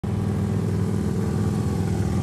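Large touring motorcycle riding slowly past, its engine running with a steady low-pitched sound, with more motorcycles following behind.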